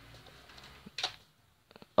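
Quiet room tone with one short click about a second in and a few soft ticks near the end.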